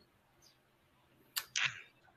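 A pause in a man's speech: near silence, then about one and a half seconds in a sharp mouth click followed by a short breath drawn in before he speaks again.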